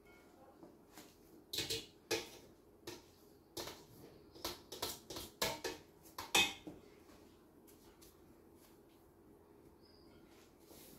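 Kitchenware handled on a counter: a glass pitcher being moved and settled, giving a quick series of light clinks and knocks from about a second and a half in until past six seconds, the loudest near the end of the series.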